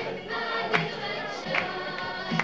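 Music with a group singing over a steady beat that hits about every 0.8 seconds.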